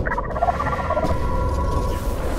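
A small robot's rapid, warbling electronic babble, like a run of chopped beeps, over a low rumbling drone with a steady hum; the babble gives way to a held electronic tone after about a second.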